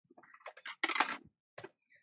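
Light clicks and rustles of fingers handling a small rolled paper bead on a tabletop, with a short louder rustle about a second in.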